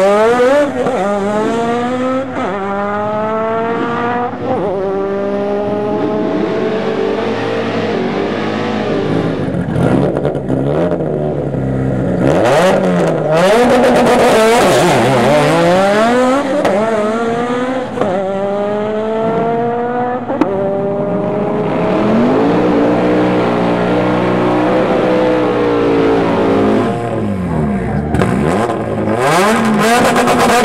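Turbocharged Mitsubishi Lancer Evolution drag car on 38 psi of boost accelerating hard through the gears. The engine pitch rises and drops back at each shift. There are several runs back to back, and the last one starts near the end.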